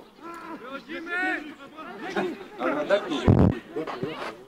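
Footballers' shouts and calls across a grass pitch, several voices in short bursts, with a dull low thump a little over three seconds in.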